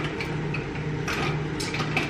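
Small clicks and knocks of cosmetics being rummaged through in a fabric makeup bag, a few sharp ones in the second half, over a low hum that pulses on and off.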